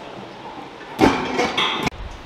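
A steel strongman log dropped from the lifter's shoulders onto the floor pads: a sudden loud thud about a second in, followed by clattering that cuts off abruptly near the end.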